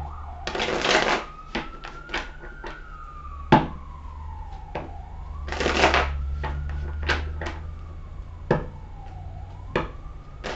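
A deck of tarot cards being riffle-shuffled by hand: two riffles, about a second in and about six seconds in, with light taps and clicks of the cards between them. A faint tone rises and falls slowly in the background.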